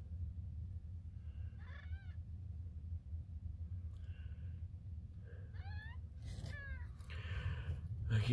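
Newborn kittens mewing faintly with thin, high-pitched cries: one about two seconds in, then several in quick succession near the end, over a low steady hum.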